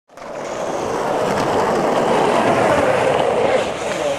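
Skateboard wheels rolling on concrete: a steady rolling rumble that fades in over the first half second.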